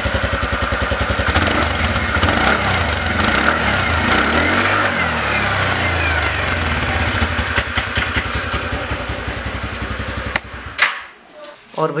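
TVS Ntorq 125 scooter's single-cylinder engine running, heard close to its exhaust as a steady, even putter. The sound cuts off suddenly about ten and a half seconds in.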